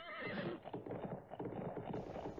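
Faint horse sounds: the tail of a whinny with a wavering pitch, then quick, irregular hoofbeats.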